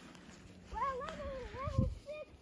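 A child's high-pitched, wordless vocal call that wavers up and down for about a second, starting partway in. A brief low thump near the end is the loudest moment.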